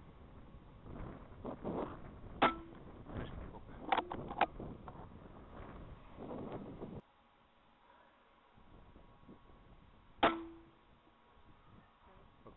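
Sharp rifle shots, each with a brief ringing tail: one about two seconds in, another about four seconds in followed closely by a second crack, and a last one near ten seconds that hits its target. Wind and rustling handling noise under the first half.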